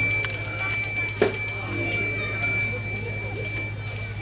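Brass temple hand bell rung continuously in quick strokes, its high ring carrying over from stroke to stroke and settling to about two strokes a second, rung as part of the temple ritual. A steady low hum runs underneath.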